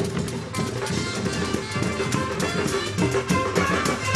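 Live fanfare band music: drums beating a steady rhythm under saxophones and clarinet playing sustained melody lines.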